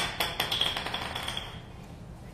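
Hard objects clinking and tapping: a sharp knock, then a run of lighter taps over a high ringing note that fades within about a second and a half.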